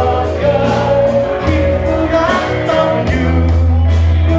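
A band playing a Thai pop-rock song live, with a sung vocal over bass and a steady drum beat.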